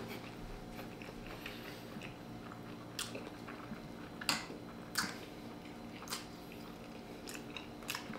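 Quiet close-up chewing of a grilled sausage, with a handful of sharp wet clicks and smacks about a second apart from about three seconds in.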